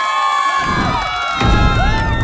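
A group of young people cheering and shouting, many voices yelling and whooping at once, with a deep rumble coming in about half a second in.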